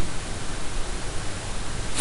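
Steady hiss of the recording's background noise, even and unbroken.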